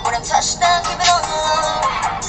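A young woman singing a pop song into a handheld microphone over a backing track.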